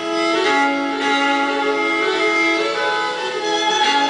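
Violin music starting up, playing a slow melody of held notes.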